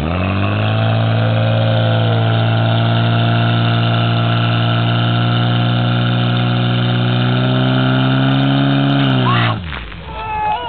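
Portable fire pump's engine revved up and held at high, steady revs while it draws water from the tank, its pitch creeping slightly higher, then dropping away sharply near the end as the throttle comes off.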